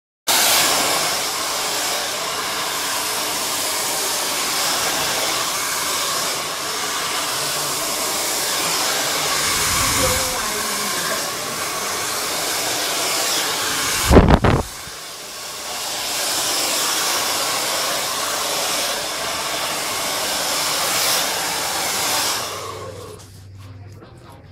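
Handheld hair dryer blowing steadily while hair is being blow-dried. About 14 seconds in there is one loud bump, the loudest thing here, and the dryer's sound drops for a moment before coming back; it fades out near the end.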